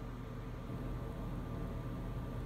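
Steady low hum and hiss of background room noise, with no distinct events.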